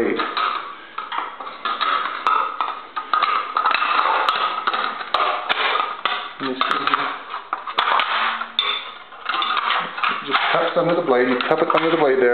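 A man talking over light clicks and knocks as a blade guard is handled and fitted under the edge of a large paper cutter's blade.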